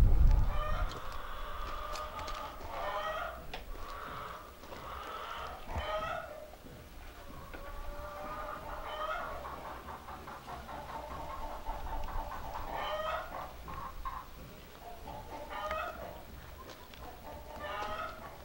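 A flock of chickens clucking and calling over one another in repeated short calls. A low rumble on the microphone sounds in the first moment.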